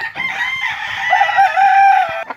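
A gamecock crowing: one long crow of about two seconds, its pitch wavering.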